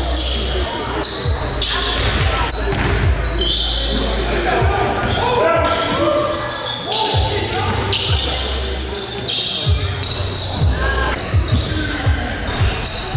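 Live sound of a basketball game in a gymnasium: the ball bouncing on the hardwood court among players' voices and shouts, echoing in the large hall.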